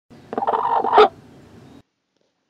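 A hen sitting on her nest gives one call of under a second that ends on its loudest, sharpest note, followed by a short faint hiss that cuts off abruptly.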